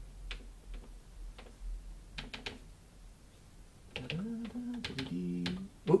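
Scattered clicks of the plastic panel buttons on a Yamaha Tyros 5 keyboard as they are pressed to delete and enter letters, a dozen or so separate clicks. A man's voice murmurs briefly in the second half.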